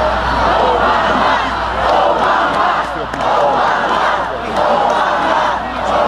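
Large crowd cheering and shouting, many voices at once, swelling and easing every second or so.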